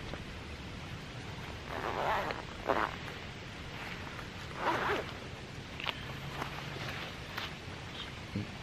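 Front zipper of a Sitka Stratus jacket being pulled open in a few short pulls, the loudest about two seconds in and again about five seconds in, with a few faint clicks of fabric and gear between.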